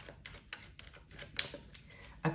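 Tarot cards being shuffled and handled, a run of irregular light clicks and taps with one sharper snap about one and a half seconds in.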